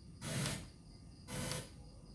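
Two short bursts of FM radio static, about a second apart, from a Sony LBT-A490K stereo system's tuner as it auto-seeks up the FM band between stations.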